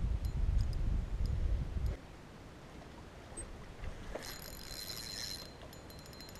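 Low rumbling noise on an action camera's microphone for about the first two seconds. After that it is fairly quiet, with a brief high hiss about four seconds in.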